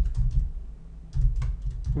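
Computer keyboard being typed on: a run of quick keystroke clicks, with a short break in the middle.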